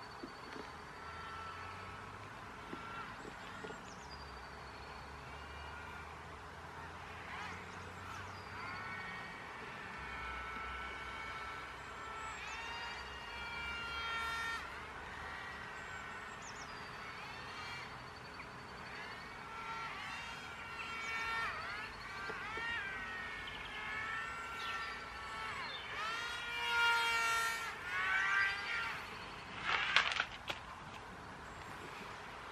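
Twin small electric motors and propellers of a Sky Hunter 230 radio-control flying wing in flight: a buzzing whine that rises and falls in pitch as the throttle and the steering thrust change. It grows louder toward the end, with quick sweeps up and down in pitch as the plane passes close.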